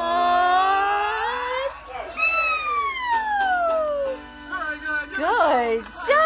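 A voice making drawn-out, sliding 'ah' sounds of a fake sneeze wind-up: a rising tone, then a long falling glide and a quick up-and-down swoop, with music underneath.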